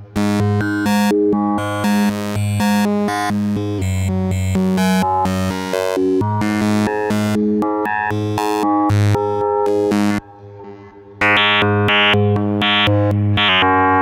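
Eurorack modular synth playing a sequenced run of quick notes, an Expert Sleepers Disting mk4 running as a wavetable oscillator, over a held low tone. The sound drops out for about a second around ten seconds in, then comes back with brighter notes.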